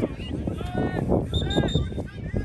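Children's high-pitched voices calling and shouting across a youth soccer pitch, with a short steady whistle blast about a second and a half in.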